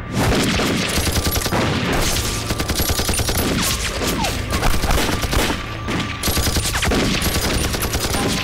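Heavy battle gunfire: many rifle shots fired in quick succession and overlapping, a continuous volley of shots.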